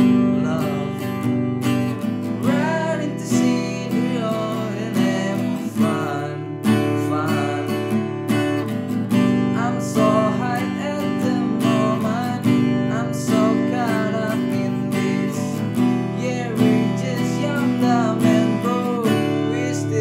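Acoustic guitar strummed in a steady down-down-up-up-down-down-down-up pattern over G, E minor and D chords, with a man singing along.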